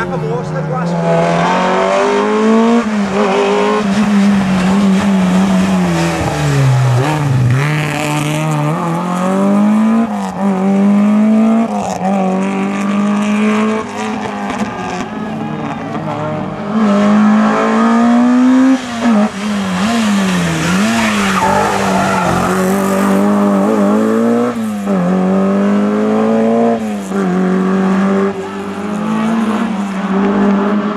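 Rally cars' engines braking into and accelerating out of a tight hairpin: the engine note drops as they slow, then climbs steeply again and again as they rev hard through the gears. Two or more cars are heard in turn.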